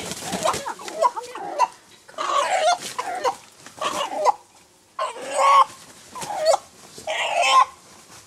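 A rooster squawking in distress while being held and restrained: a string of about six loud calls, roughly one a second.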